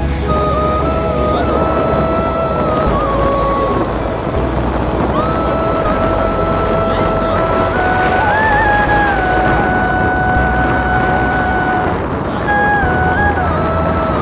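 Background music: a melody of long held notes with smooth glides between them, over a steady low rumble.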